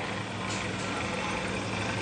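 Steady low hum with an even hiss beneath it: the background noise of a large tented hall with a loudspeaker system, heard in a pause in speech.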